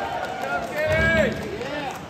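Concert audience between songs: a voice in the crowd calls out once, its pitch falling, about a second in, over a low crowd murmur.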